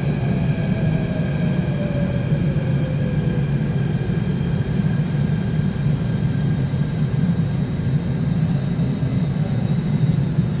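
Seoul Metro Line 2 electric train pulling into the station and slowing: a steady low rumble of wheels on rail, with a motor whine that falls in pitch over the first few seconds.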